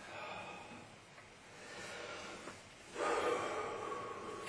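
A man breathing hard in gasping breaths, three of them, the last and loudest starting about three seconds in with a little voice in it. It is the heavy, excited breathing of a hunter just after shooting a deer.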